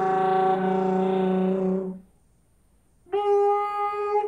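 Solo trumpet holding a low note for about two seconds, then a break of about a second, then a higher held note.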